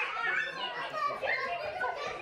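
Several young children's voices chattering and calling out at once in a room.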